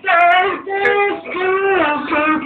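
A young man singing in a high voice into a handheld microphone, holding long notes that slide in pitch, in short phrases with brief breaks between them.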